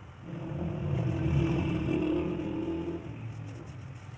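A motor vehicle passing by, its engine growing louder, then fading over about three seconds.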